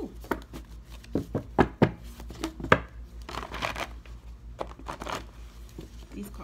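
A deck of old, unlaminated handmade paper cards being shuffled by hand, stiff and hard to shuffle. It gives a run of sharp slaps and clicks, loudest between about one and three seconds in, and a short rustle of the cards around the middle.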